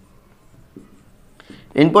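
Faint strokes of a marker pen writing on a whiteboard, a few soft scratches and ticks, before a man's voice comes in near the end.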